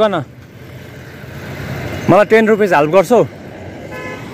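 Road traffic noise that swells over the first couple of seconds, as if a vehicle is approaching, with a man calling out loudly in the middle.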